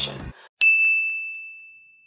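A single bright ding, like a small bell struck once, ringing out with one clear tone and fading away over about two seconds: a transition sound effect between segments.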